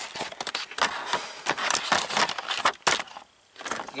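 Bunch of car keys on a ring jangling and clinking in quick irregular clicks, with handling rustle, dropping away briefly a little after three seconds.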